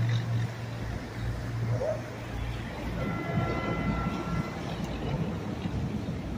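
Outboard motors of a center-console fishing boat running at low speed as it passes, a steady low drone. Near the middle a faint high steady tone sounds for about a second and a half.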